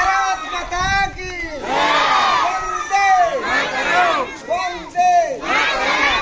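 A crowd shouting patriotic slogans together at a flag salute: loud chanted calls, one about every second.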